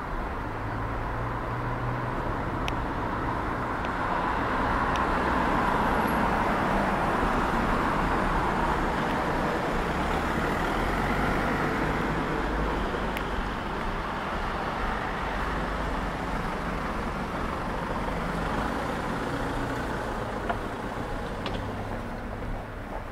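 Steady road-traffic noise in town, swelling louder for several seconds in the middle as vehicles pass.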